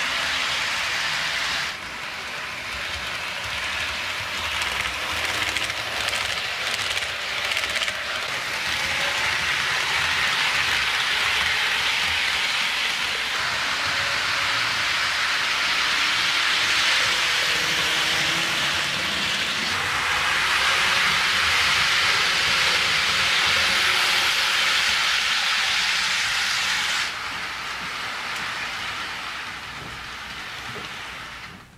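HO scale model freight train rolling close by on sectional track: a steady rushing hiss of metal wheels on the rails. The sound drops abruptly about two seconds in and again near the end, then builds back up.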